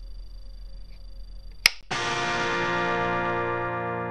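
Tube guitar amplifier humming at idle with a faint high whine, then a sharp click about one and a half seconds in. Right after it an electric guitar chord is struck once through the amp and left ringing, slowly fading.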